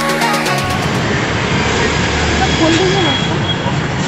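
Background music that stops about half a second in, giving way to busy outdoor street-market noise: a steady rumble of road traffic with people's voices mixed in.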